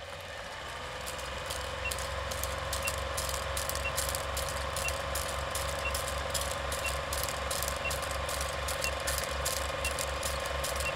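Film projector running: a fast mechanical clatter over a low pulsing hum, with a faint short beep once a second.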